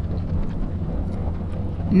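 A steady low drone with a faint hiss above it, unchanging throughout.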